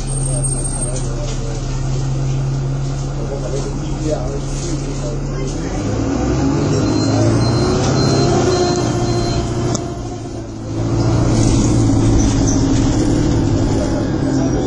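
Bus engine heard from inside the passenger saloon. It runs with a steady low note for the first few seconds, then grows louder and changes pitch about six seconds in as the bus pulls away. The level dips briefly about ten seconds in before the engine pulls again.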